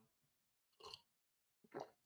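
Near silence, with two faint short mouth sounds, about a second in and near the end, as coffee is sipped from a mug and swallowed.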